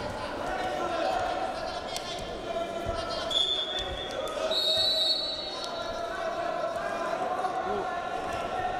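Arena ambience during a wrestling bout: a steady hum of crowd chatter and calls from coaches, with scattered thuds of wrestlers' feet and bodies on the mat. Two brief high-pitched tones sound about halfway through.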